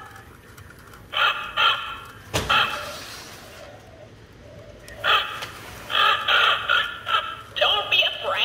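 Animated talking raven Halloween prop speaking through its small built-in speaker, in several short phrases with pauses between them. A sharp click comes about two and a half seconds in.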